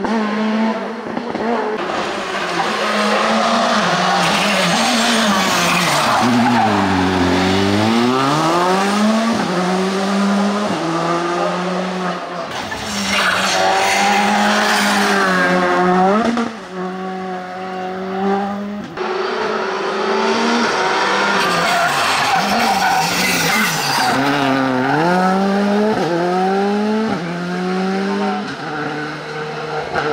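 Rally cars on a tarmac stage, revving hard through the gears. The engine note drops on braking and downshifts, then climbs again as the cars accelerate out of a hairpin, with some tyre squeal. One car follows another, a Peugeot 106 and then a Škoda Fabia.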